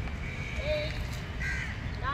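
A crow cawing over a steady low rumble, with a short call around the middle and a louder one near the end.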